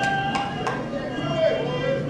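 Film soundtrack played through lecture-hall speakers: several voices singing long held notes, with three sharp strikes in the first second.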